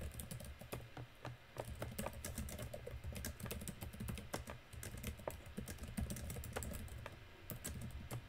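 Computer keyboard typing: a quick, irregular run of keystrokes, with a short pause near the end before a few more keys.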